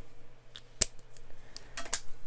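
A few sharp clicks and taps as a gel pen is handled and put down, the loudest a single crisp click a little under a second in.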